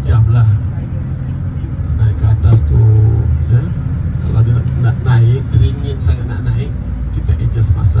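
Inside a moving bus, a steady low engine and road rumble, with a man's muffled voice over the bus's microphone and PA on top.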